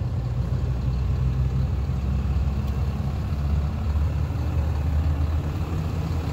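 Cummins turbo-diesel engine of a Ram 2500 pickup idling steadily, a low even drone.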